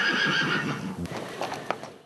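A horse whinnying: one long, wavering high call that ends within the first second. Two sharp knocks follow in the second half, and the sound fades out at the end.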